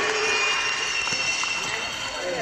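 Indistinct voices echoing in a large ice arena, growing quieter, with a few scattered knocks.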